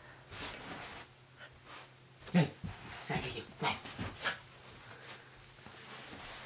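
A small dog making a few short vocal sounds during a game of fetch, mixed with a man's quiet, wordless voice.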